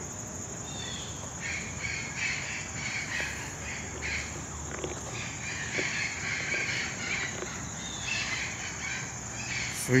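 Outdoor ambience: birds calling, over a steady high insect trill.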